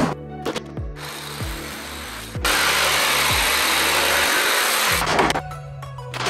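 Jigsaw cutting a cedar tongue-and-groove siding board: a loud, steady saw noise that starts about two and a half seconds in and cuts off suddenly about five seconds in, over background music.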